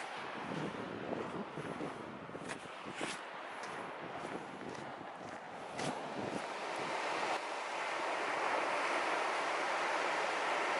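Surf breaking on a sandy beach, with wind buffeting the microphone and a few sharp clicks in the first half. The waves grow steadily louder toward the end.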